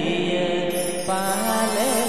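Santali song playing for a dance: a voice singing long, wavering notes over instrumental accompaniment, with a new phrase starting about a second in.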